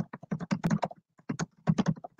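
Fast typing on a computer keyboard: a quick run of key clicks, with a short pause about a second in.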